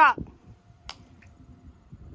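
A raw egg dropped from about 4.5 m hits asphalt pavement with one short, sharp crack about a second in.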